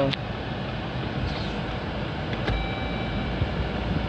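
Steady hum inside the cabin of a 2013 Dodge Journey with its 2.4-litre four-cylinder idling and the air conditioning running. About two and a half seconds in there is a sharp click and a short electronic tone, as the shifter goes into reverse and the rear-camera display comes on.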